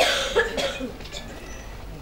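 A man coughs into a close microphone: one sharp cough right at the start, then a smaller one about half a second later.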